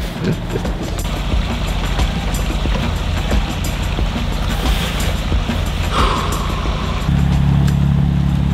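A trawler's diesel engine running steadily at slow speed, a low drone that steps up in level about seven seconds in.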